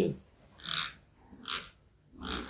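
Two short, breathy grunts from a domestic pig about a second apart, from a boar mounted on a sow during mating.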